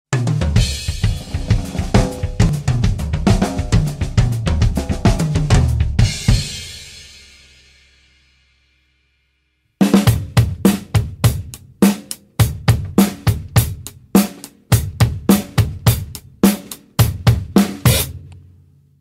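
Drum kit: a busy drum passage that ends with a cymbal ringing out and fading by about eight seconds in. After a short silence, a Yamaha acoustic drum kit plays a steady groove of hi-hat, snare and bass drum at about four strokes a second.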